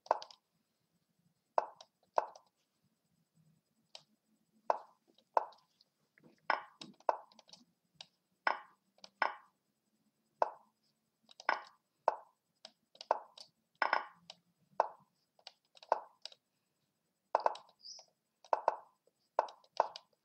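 Lichess move sounds: short wooden plops, one for each chess move, coming irregularly about once or twice a second in a fast bullet game.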